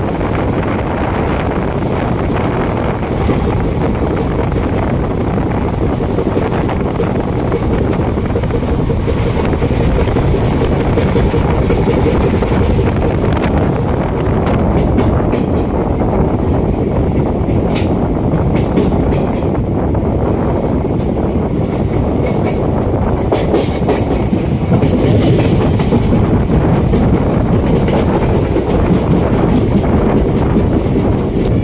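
Passenger train running along the track, heard from an open coach doorway: a steady rumble of wheels on the rails, with sharp clicks over rail joints and points in the second half.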